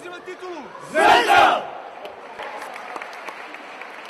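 A team of men shouting together in one loud, brief cheer about a second in, breaking a hands-in huddle; then hall chatter with a few sharp slaps of hands.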